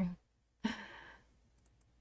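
A woman's short breathy exhale, starting sharply and fading out over about half a second, followed by near silence.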